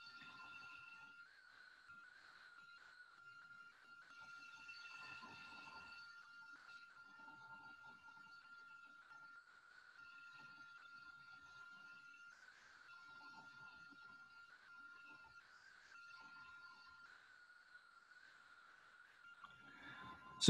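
Very faint sound of a HOMAG Centateq N-300 CNC nesting router cutting parts from a panel: a steady high whine with faint cutting noise that rises and falls as the router moves between parts.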